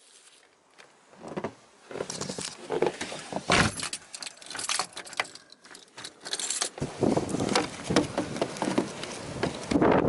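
A bunch of keys jangling as a door is locked with them, along with irregular footsteps crunching in snow.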